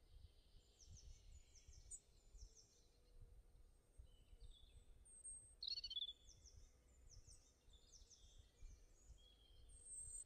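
Faint birds chirping: runs of short, high notes, with one louder call about six seconds in, over near silence.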